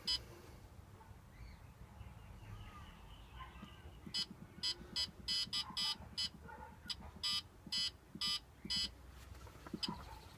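Kiln controller keypad beeping: a run of short electronic beeps, two or three a second, starting about four seconds in and stopping about a second before the end, as the buttons are pressed to step the setting.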